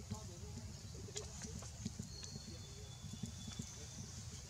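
Faint outdoor background: indistinct low voices near the start, scattered short sharp clicks, and a thin steady high tone lasting about a second and a half in the middle.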